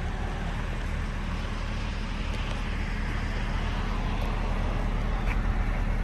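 Steady low rumble of motor-vehicle noise, getting slightly louder over the last couple of seconds.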